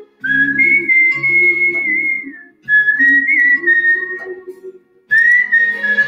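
A person whistling a slow melody in long held notes over a soft instrumental backing track. The melody comes in three phrases with short pauses between them.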